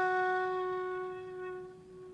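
Concert flute holding a single long low note that fades away over about two seconds.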